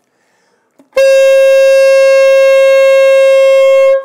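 Saxophone holding one clean, steady note, A fingered with the octave key, for about three seconds, starting about a second in. This is the normal tone with no growl.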